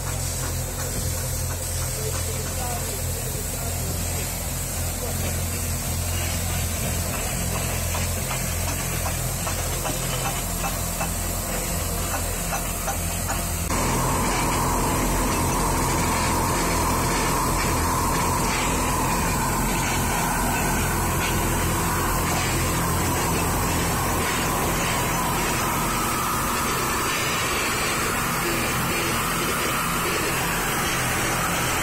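A large diesel excavator engine running steadily. About halfway through it cuts suddenly to a louder, steady hissing whir of metal repair work on the excavator's worn pin bosses, with a power tool throwing sparks.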